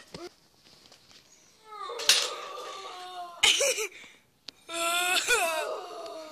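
A boy's wordless vocal cries, three of them, each sliding down in pitch, after a brief near-silent pause.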